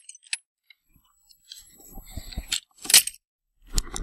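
Wooden chicken-coop doors being pushed shut and latched by hand: a rustling scrape, then one sharp clack about three seconds in, with a few low knocks near the end.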